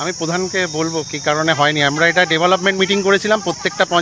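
A man talking, over a steady high-pitched chirring of crickets.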